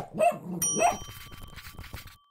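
Cartoon sound effect of a dog giving a few short barks, with a bell ding about half a second in that keeps ringing as it fades.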